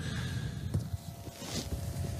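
Faint low background rumble with a few soft, muffled knocks.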